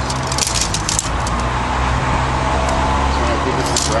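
Aluminium tent pole sections clicking and rattling against each other as a segmented pole is unfolded, mostly in the first second. A steady low engine hum runs underneath.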